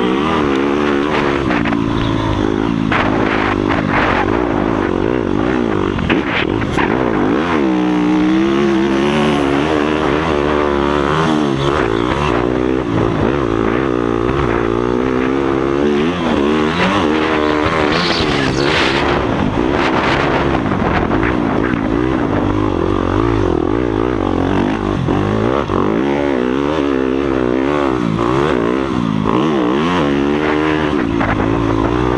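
Yamaha YZ motocross bike's engine heard from on board, revving up and falling back again and again as it is ridden hard, its pitch climbing and dropping with the throttle and gear changes.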